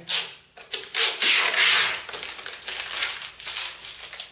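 Protective plastic film being peeled off the face of a 20 mm thick acrylic block: a few loud ripping pulls, the longest lasting about half a second just after the first second, then softer crinkling of the film.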